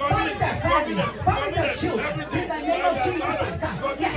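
Speech only: a man praying aloud and unbroken through a microphone in a hall.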